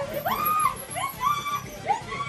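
A person's high-pitched frightened yelps: about four short cries in quick succession, each rising, holding briefly and dropping, from people fleeing a snake.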